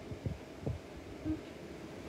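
A quiet pause with a low steady hum and a few faint low thumps, two of them in the first second.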